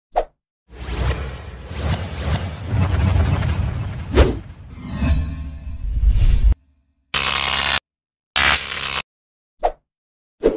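Animated logo-intro sound effects: a quick pop, then a long rumbling whoosh that swells and dips with a sharp hit in the middle, ending abruptly; two short buzzy tone blasts and another pop follow near the end.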